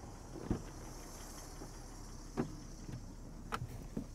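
A car's rear door being opened and a person climbing into the back seat: a few soft knocks and clicks over a low steady background hum.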